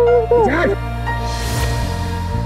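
Dramatic background score of low held notes with a wavering wordless voice over it. The voice ends in a short sliding vocal sound about half a second in, after which only the score's sustained notes remain.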